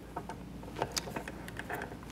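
A few faint, scattered clicks of a speedlight flash being screwed onto a brass threaded light-stand spigot.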